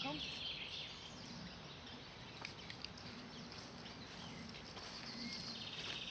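Outdoor ambience with small birds chirping and twittering, including a short trill near the end, and a few faint clicks about two and a half seconds in.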